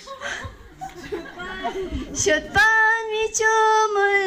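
A woman singing into a microphone, coming in about two seconds in with long held notes. Before that there are only quieter voices.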